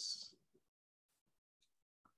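Near silence: a man's last word trails off, then nothing.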